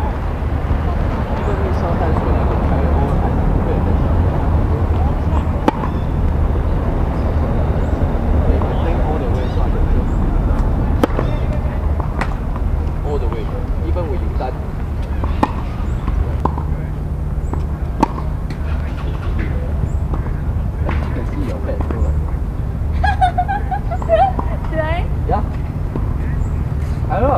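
Tennis balls being struck by rackets and bouncing on a hard court, a sharp pop every few seconds, over a steady low outdoor rumble and faint voices.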